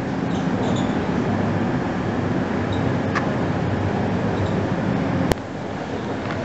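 Steady rush and low hum of the dry dock's air blowers, the dehumidifying system that keeps the air dry around the iron hull. A sharp click about five seconds in, after which the noise is a little quieter.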